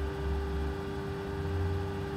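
Room tone: a steady low hum and background noise, with a deep rumble that swells twice.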